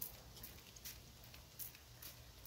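Near silence: faint outdoor background with a few soft clicks.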